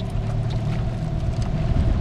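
Heavy rain pattering on the river and the boat, over a steady low hum.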